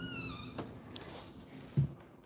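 Front door hinge squeaking as the door swings, one short falling squeak at the start, then a short low thump near the end.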